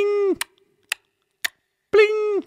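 Metronome count in four-time at about two beats a second: a pitched 'bling' on beat one followed by three sharp ticks, then the next 'bling'. The accented bling marks the first beat of each bar.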